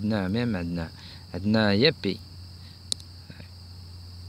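A man's voice sounding twice in the first two seconds without clear words, over a steady high-pitched hiss and a low hum. A single faint click comes near the three-second mark.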